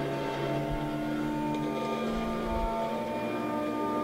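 Organ music: a sustained chord held steady, its low notes changing about three seconds in.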